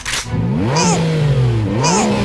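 Cartoon race-car engine sound effect revving twice: each time the pitch shoots up sharply and then slowly falls away, with a brief high hiss at each peak.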